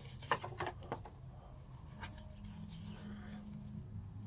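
A deck of tarot cards being handled and shuffled by hand: a few light card clicks in the first second, then quiet soft rustling.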